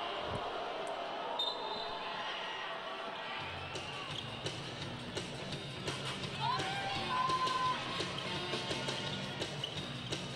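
Basketball being dribbled on a hardwood court, a run of repeated bounces starting a few seconds in, over steady arena crowd noise and background music.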